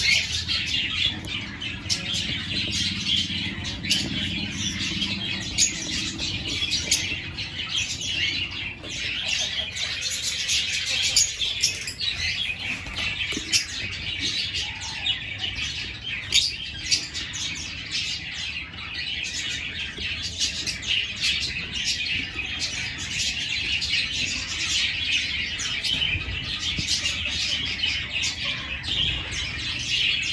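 A flock of aviary lovebirds, Fischer's lovebirds among them, chirping continuously: a dense chatter of many short, high calls overlapping without a break.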